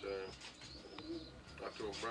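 Pigeons cooing faintly, with brief fragments of a man's voice at the start and near the end.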